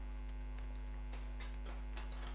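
Steady electrical mains hum at an even level, with a few faint ticks.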